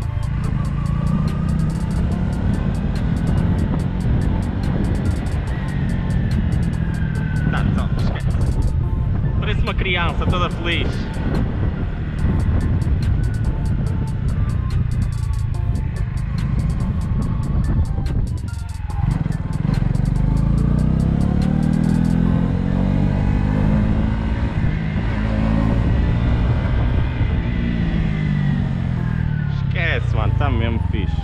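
Honda CB125R's single-cylinder 125 cc four-stroke engine pulling the bike along at low speed, its revs rising and falling with the throttle and gear changes, with wind rushing over the head-mounted camera's microphone.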